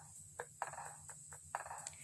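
Faint crinkling of a thin plastic produce bag as a frozen whole chicken is put into it, in several short rustles.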